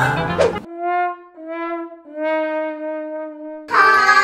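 Music cuts off and a brass sound effect plays three descending notes, the last one held: a comic 'wah-wah-wahhh' sting of the sad-trombone kind.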